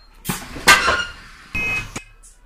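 Enviro400 bus's powered doors working: short noisy bursts of air and door movement, the loudest about a second in, then a short steady beep near the end.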